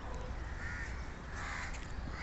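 Faint outdoor background noise with a couple of short, distant animal calls in the second half.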